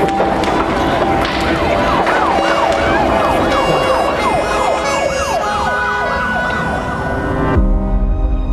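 Emergency vehicle siren yelping in fast repeated rising sweeps, about two or three a second, over loud street noise. The noise cuts off suddenly near the end and music comes in.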